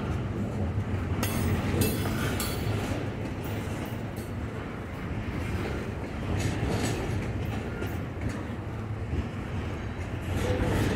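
Freight train's intermodal well cars rolling past with a steady rumble of steel wheels on the rails, broken by irregular sharp clacks.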